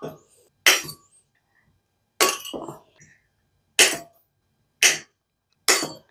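Metal wire stems of a wire photo holder being snipped through with combination pliers: five sharp snaps about a second apart, the one near the middle trailing off in a brief rattle.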